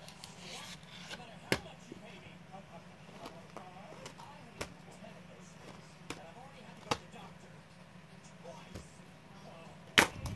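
Plastic Blu-ray case being handled: several separate sharp clicks and taps as it is turned over, then a loud snap right at the end as the case's clasp is pulled open.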